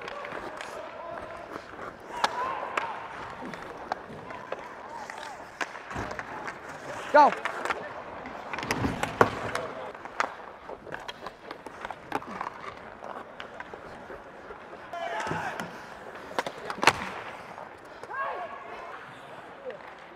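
Ice hockey play heard on a player's body mic: skates scraping the ice, with many sharp clacks and knocks of sticks, puck and boards. Players shout short calls now and then, one a "Go" about seven seconds in.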